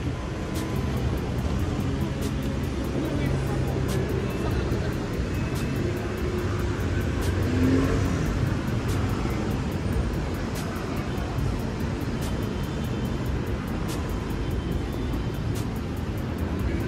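Busy city street at night: voices and chatter from crowded café terraces over a steady hum of traffic, swelling a little about eight seconds in.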